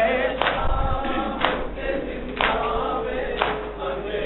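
A noha sung by a male reciter through a microphone, with a group of men chanting along. Their matam chest-beats land in unison, a sharp slap about once a second.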